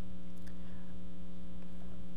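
Steady electrical mains hum, a low buzz that carries on unchanged with nothing else over it.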